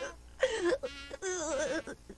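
A cartoon boy's voice making two short, wavering vocal sounds without clear words, the first about half a second in and the second a little past one second.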